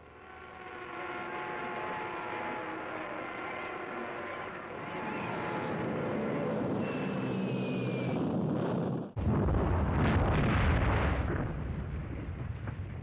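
Propeller bomber engines drone, swelling over the first couple of seconds. A falling bomb whistle follows, and a heavy explosion bursts in about nine seconds in and rumbles for about two seconds.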